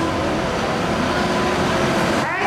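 Friendship water-taxi boat's engine running steadily, a low rumble with a faint steady hum, heard inside the boat's cabin.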